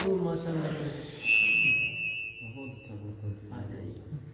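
A steady, high-pitched whistle-like tone sounds for about a second and a half, starting about a second in. It is the loudest sound here, over low men's voices and the last trailing note of a sung recitation.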